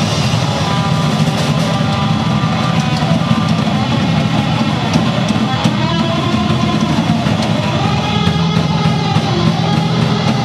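Live indie/grunge rock band playing loud: electric guitars over a drum kit, with steady drum and cymbal hits throughout.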